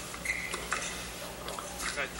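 Tennis ball struck by rackets on a wide serve and the return: a few faint, sharp knocks over quiet indoor arena background.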